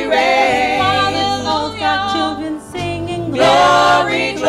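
A group of women singing a gospel praise song in harmony into microphones, rising to a loud held note near the end.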